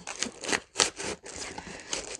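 Packaging rustling and scraping in irregular short bursts as a tightly packed mini waffle maker is tugged at in its box.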